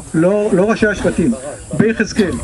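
Speech only: a man talking in Hebrew into a handheld microphone, with a steady hiss behind the voice.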